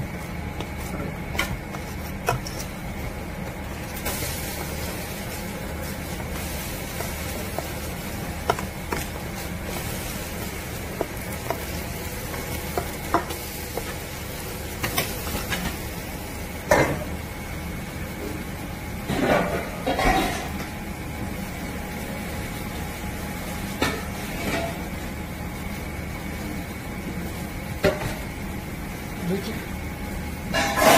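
A metal spoon stirring thick chili seasoning paste in a stainless steel bowl, with scattered clinks against the bowl and a few louder scraping bursts, over a steady background hum.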